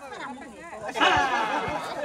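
Several people chattering at once, their voices rising about a second in.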